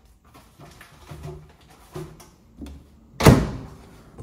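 Soft handling sounds of a food container being set inside a microwave, then the microwave door shut with one loud thunk about three seconds in.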